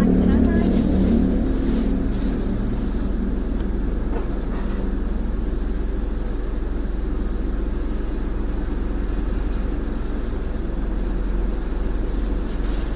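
Car engine idling steadily, heard from inside the cabin while stopped, with a short spoken reply near the start.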